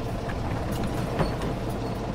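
A steady low rumble with a few faint clicks and taps.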